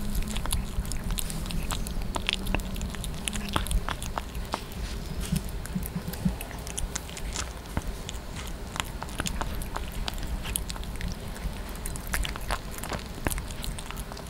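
Yorkie puppy eating raw meat close to a microphone: wet chewing and mouth smacking, many small irregular clicks throughout.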